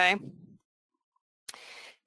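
A spoken word trailing off, then dead silence, then a sharp click and a faint breath drawn just before speaking again.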